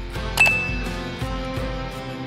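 Background music with a mouse-click sound effect and a single short bright ding about half a second in: the notification-bell chime of an animated subscribe button.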